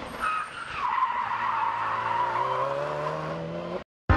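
Subaru WRX STI rally car cornering hard on tarmac: tyres squealing over the engine, whose note rises slowly as the car accelerates through the turn. The sound cuts off suddenly just before the end.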